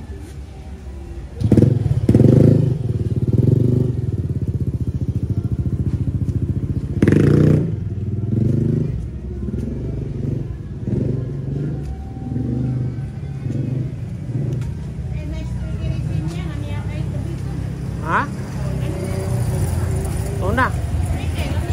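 A small motorcycle engine running close by. It starts loudly about a second and a half in and then keeps going with its revs rising and falling.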